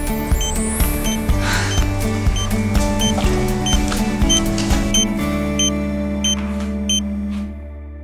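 Background music with a steady beat, over a high electronic beep repeating about twice a second: a smartphone's find-my-phone alert, set off by pressing the smart tracker's button. Both fade out near the end.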